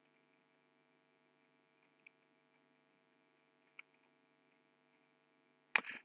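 Very faint steady electrical hum with two faint short clicks, about two seconds in and again near four seconds.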